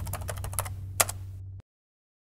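Typing sound effect: a quick run of key clicks as title text types on, with one louder click about a second in, over a low steady hum. Everything cuts off abruptly about a second and a half in, leaving dead silence.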